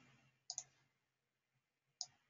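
Computer mouse clicking: two quick clicks about half a second in, a fraction of a second apart, and one more click near the end, with near silence between.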